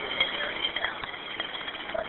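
Hiss and background noise on a recorded 911 emergency phone call, with faint voices in the background and no clear speech in the foreground.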